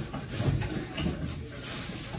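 Plastic trash bag rustling and light knocks as items are gathered into it, with a soft low bump about half a second in.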